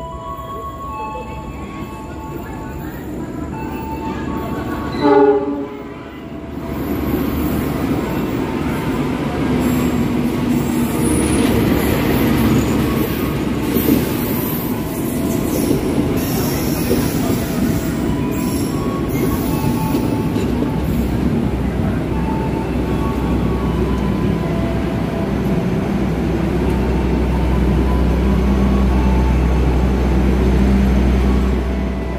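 Passenger train arriving at a station platform: a short train horn blast about five seconds in, then the steady rolling noise of the coaches running past and slowing. A deeper, steady engine rumble builds near the end.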